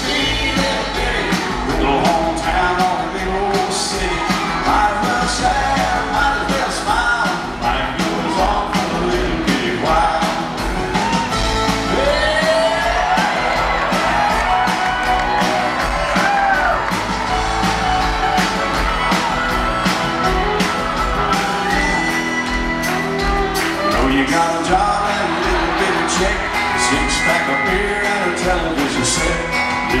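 Live country band playing an instrumental break between verses, with drums, acoustic guitars and a lead line whose notes slide between pitches. Heard from among the audience in a large venue.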